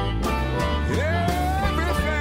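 Country blues recording playing: a guitar-led band, with one note that slides up about a second in and is then held.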